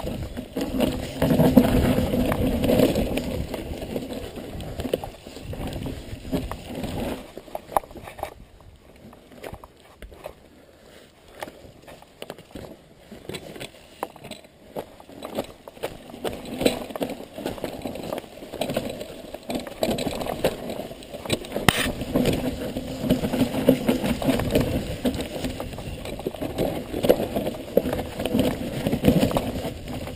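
Mountain bike riding down a rooty dirt trail: tyres rolling and the bike rattling, with frequent knocks as it goes over roots and bumps. It quietens for several seconds in the middle, then gets busy again.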